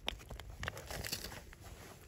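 Faint scattered clicks and rustles of a tip-up being handled at an ice-fishing hole and fishing line being drawn up by hand.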